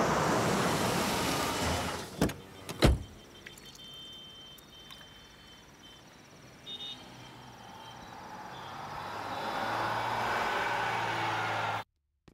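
Car (a Maruti Suzuki Swift Dzire) pulling up and stopping, with engine and tyre noise loud for the first two seconds. Two sharp knocks follow, a little after two seconds and about three seconds in, like its door being opened and shut. A quieter background follows, swelling again near the end and cutting off suddenly.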